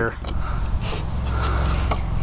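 Hobby servos in an Arduino turret buzzing with a low steady hum as the launcher arm is steered. A short breathy hiss about a second in and a faint click near the end.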